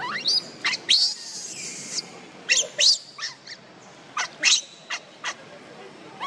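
Baby macaque crying: a string of short, high squeals, each sweeping up in pitch, repeated many times.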